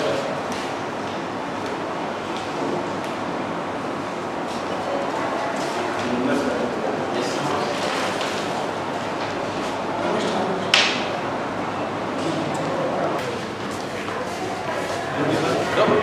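Indistinct voices of several people talking at once in a room, a steady murmur with no single clear speaker. One sharp click about eleven seconds in.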